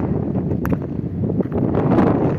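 Wind buffeting the phone's microphone, a loud, steady low rumble, with one brief sharp click about a third of the way in.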